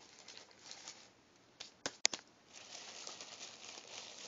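Paper food wrapping crinkling as it is handled, with a few sharp clicks a little after halfway.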